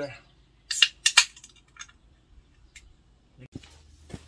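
Aluminium can of carbonated energy drink being opened by its pull tab: two sharp cracks with a hiss of escaping gas, about a second in and under half a second apart.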